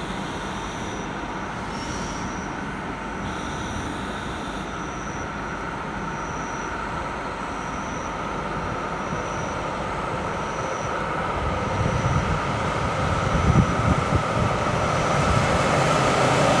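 A JR Hokkaido electric train approaching the station, its running noise growing louder over the last few seconds. A faint high beep repeats about once a second.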